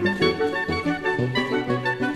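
Amplified soprano saxophone playing quick, pulsing patterns of short notes, layered with other overlapping saxophone-like lines that reach well below the soprano's own range.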